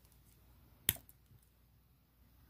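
One short, sharp click of metal jewelry pliers on a jump ring about a second in, against quiet room tone.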